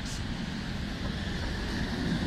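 City trolleybus approaching along a wet street, its tyres and drive growing louder toward the end as it draws level, over steady background traffic.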